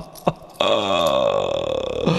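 A man laughing: the last short 'ha' pulses of a rhythmic laugh, about three a second, then about half a second in a long, drawn-out vocal sound that falls in pitch.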